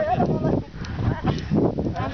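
Young men's voices shouting and calling out, with a low drawn-out call about three-quarters of the way through.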